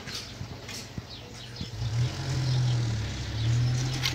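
Small birds chirping in short high calls, then about two seconds in a low, steady engine drone comes in and becomes the loudest sound.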